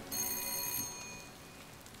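A doorbell rings once, a high bell tone lasting under a second, over the steady hiss of rain.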